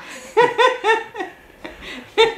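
A person laughing: a quick run of about four short "ha" bursts starting about half a second in, then trailing off.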